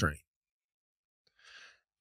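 Near silence in a pause between sentences, with one short, faint intake of breath about one and a half seconds in.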